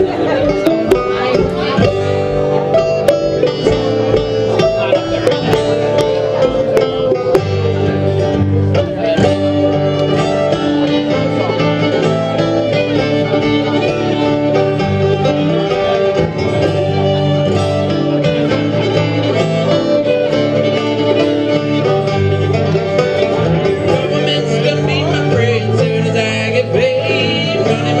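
Acoustic string band playing an up-tempo bluegrass-style instrumental: strummed acoustic guitar, picked banjo, fiddle and upright bass. Near the end the fiddle plays a wavering line with vibrato, leading into the verse.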